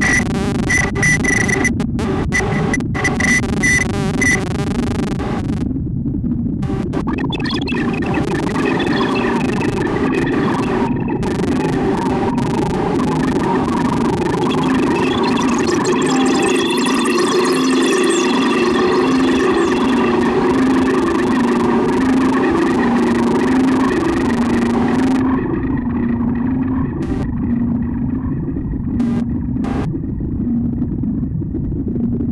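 Make Noise modular synthesizer (Tape and Microsound Music Machine with Strega) playing a textured electronic drone. A repeating clicking pattern in the first few seconds gives way to dense noisy layers and sweeping high tones, over a low pitched drone that settles in the second half. The treble falls away about 25 seconds in, as if a filter is closing.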